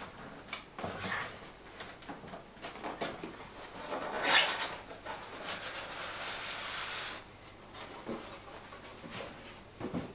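Cardboard box sliding up and off polystyrene foam packing: cardboard rubbing and scraping on foam, with scattered knocks. A loud rasping rush comes about four seconds in, followed by a steady scrape for about two seconds.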